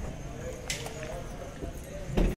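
Faint background voices over low rumble, with one sharp click under a second in.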